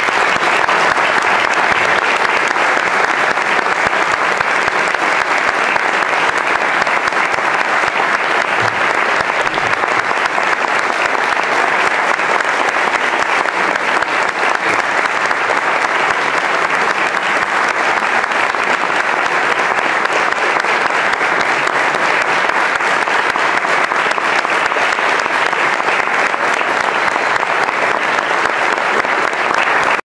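Audience applauding steadily, breaking out just as the orchestral music ends and holding at full strength throughout.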